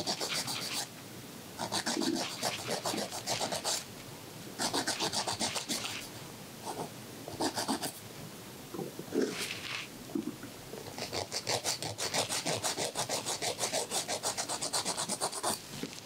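Nail file rasping across fingernails in quick back-and-forth strokes. The strokes come in spells of a second or two with short pauses between them, then run for about four seconds near the end.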